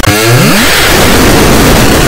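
Harsh, heavily distorted audio effect on a cartoon soundtrack: a quick rising pitch sweep in the first half-second, then a loud, buzzing, engine-like noise.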